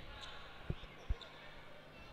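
A basketball bouncing twice on a hardwood court, two short faint thumps less than half a second apart, over the low murmur of the arena.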